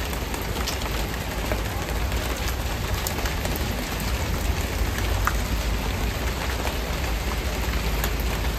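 Steady rain with scattered individual drop ticks over a steady low rumble.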